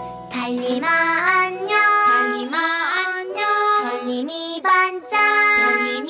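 Children's song: a child-like voice sings a bedtime melody in Korean over a light backing track.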